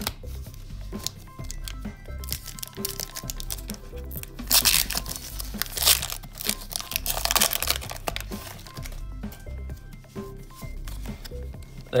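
Foil wrapper of a Pokémon trading-card booster pack crinkling and being torn open, the loudest rustling about halfway through, over background music with a pulsing bass.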